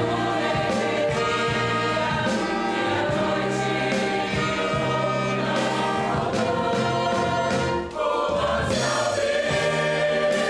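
A Portuguese-language hymn sung by many voices together with an instrumental ensemble accompanying. The music dips briefly about eight seconds in, between sung lines, then goes on.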